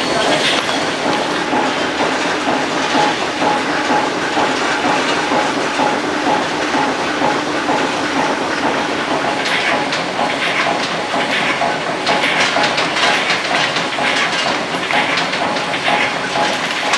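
Ammunition production machinery running, with a dense, continuous metallic clatter of brass cartridge cases being handled and a faint steady hum underneath.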